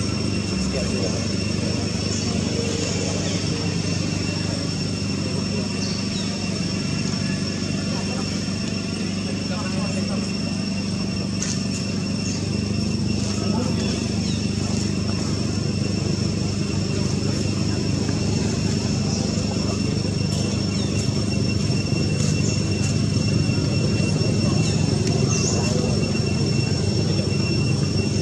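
Steady outdoor background: a continuous low hum like a running engine, with two steady high-pitched whines above it and what sounds like voices talking.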